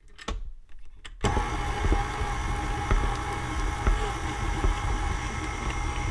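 A few clicks, then an electric stand mixer switches on about a second in and runs steadily, its flat beater creaming sticks of cold butter in a steel bowl.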